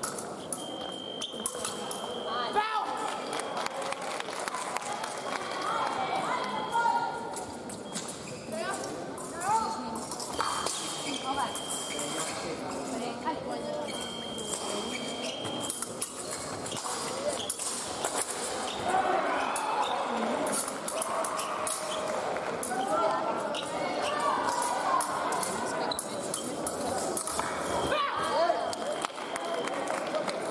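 Fencing hall sounds during an épée bout: quick footwork stamps and clicks of steel blades on the piste, over the chatter of voices in the hall. A held high electronic beep sounds three times, near the start and twice around the middle, typical of an electric scoring machine registering touches.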